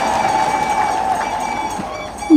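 Audience applause, an even patter of many hands clapping that tapers off gradually, with a faint steady high tone held through it.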